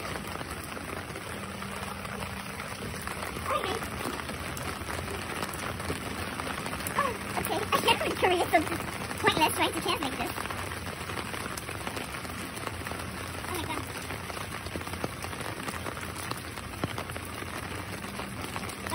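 Steady rain falling, heard from under an umbrella held overhead. About halfway through, a few seconds of low voices.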